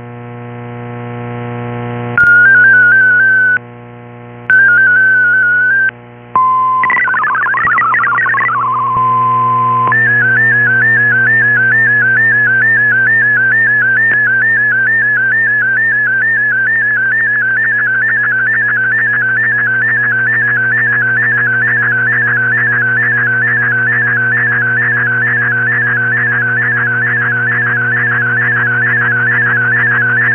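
Shortwave MFSK digital-mode audio decoded off an AM receiver: short steady and warbling data tones, a brief sweeping RSID mode-identifier burst about seven seconds in, then from about ten seconds a continuous high tone wavering rapidly up and down as an MFSK picture is transmitted. A steady low hum runs underneath.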